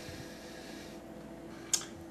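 Quiet room tone: a steady faint hum with a few thin level tones, and one brief soft hiss near the end.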